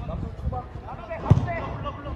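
Men's voices calling out across a football pitch during play, with one sharp thump just past halfway through.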